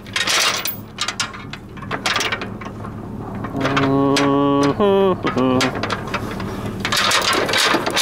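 A metal cemetery gate being swung shut and latched, with irregular clanking and rattling over a low steady hum. About halfway through comes a man's drawn-out mock-evil laugh, one long held note that falls away at its end.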